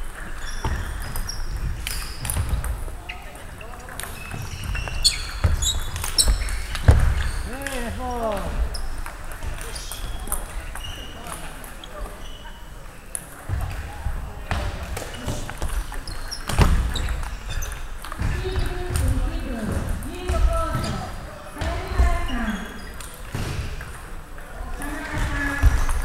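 Scattered sharp clicks of table tennis balls bouncing off tables and bats in a sports hall, with people talking in the background.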